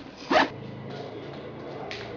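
Zipper on a fabric bag pulled in one quick stroke about a third of a second in.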